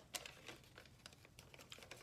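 Near silence with a scattered run of faint, light clicks and taps.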